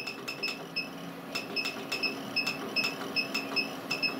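A rapid run of short, high-pitched electronic beeps, about four a second, with scattered sharp clicks over a faint steady hum. This is ham radio test gear while an antenna is being tuned to a match.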